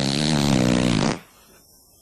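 A low, wavering, drawn-out vocal groan, stopping a little over a second in.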